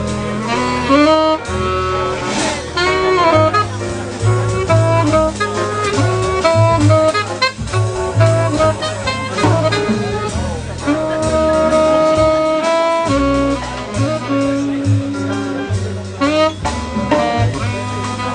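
Tenor saxophone soloing over upright double bass in a small live jazz band. The sax plays quick melodic runs and, about two-thirds of the way through, holds a couple of long notes.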